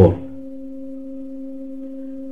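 A steady, unchanging hum on a single low note with a fainter octave above it, held without a break under the pause in the narration.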